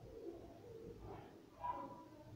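Quiet background with a few faint, short bird calls, the clearest near the end.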